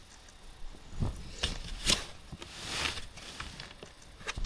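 Handling and movement noise close to a webcam microphone: a few sharp knocks and clicks about a second in, then a brief rustling rush.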